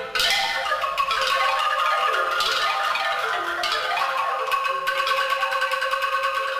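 Instrumental music in a Zimbabwean Shona style, made of quick, ringing pitched notes in repeating patterns and played on mallet percussion or a similar instrument. It comes in louder right at the start and stays steady.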